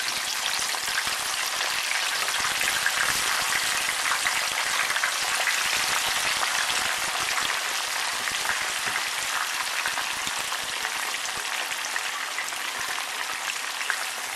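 Freshly added pieces of white sweet potato frying in hot oil in a frying pan: a steady, dense sizzle full of fine crackles, easing slightly toward the end.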